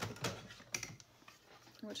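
Hard plastic clicks and a light clatter as a handheld paper tab punch is picked up from among craft tools on a table, a few sharp clicks within the first second.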